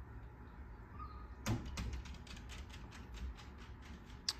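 A sharp click about one and a half seconds in, followed by a quick run of lighter clicks, about six a second, that fade out over the next two seconds, over a low steady hum.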